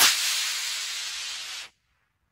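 Estes C5-3 black-powder model rocket motor firing at liftoff: a loud hiss that fades steadily as the rocket climbs away, then cuts off suddenly near the end.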